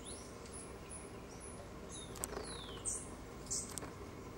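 Faint wild birdsong: a thin whistle gliding down in pitch about two seconds in, over high short chirps repeating about twice a second, with a few sharp ticks.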